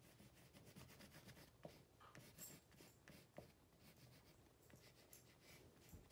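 Faint scratching of an oil pastel rubbed across paper in many short strokes while colouring in, with a few slightly sharper ticks.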